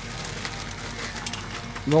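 Plastic bag of frozen french fries crinkling and the fries rattling as they are shaken out of the bag, a light crackle of small clicks.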